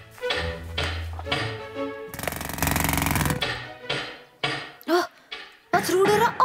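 The end of a cartoon theme tune, then a loud, very fast mechanical rattle lasting about a second, like a jackhammer, followed near the end by short rising-and-falling cries.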